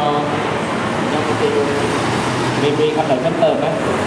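A voice talking through a microphone and loudspeakers over a steady background hubbub of a crowded hall, in short phrases about a second and a half in and again near the end.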